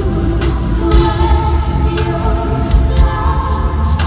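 Live R&B band with several women singing in harmony: sustained vocal lines over a steady drum beat about twice a second and deep bass.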